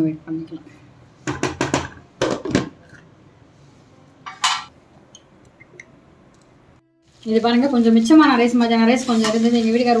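Wooden spatula knocking against a pan while stirring a thick gravy: a quick run of knocks, then two more, and a short scrape a couple of seconds later. A voice comes in about seven seconds in.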